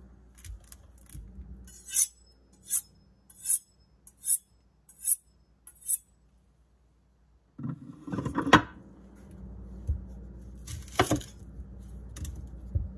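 A chef's knife being honed on a steel honing rod: evenly spaced metallic scraping strokes, six strong ones a little under a second apart after a few fainter ones. Then a rustle and a sharp knock, and another knock near the end.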